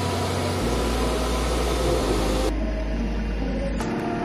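Snow-removal machinery, a Volvo motor grader working a snowy street: a low engine rumble under a steady loud hiss. About two and a half seconds in, the hiss cuts off suddenly, leaving the low rumble.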